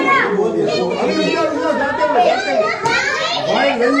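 Children and adults chattering and talking over one another, with a brief click about three seconds in.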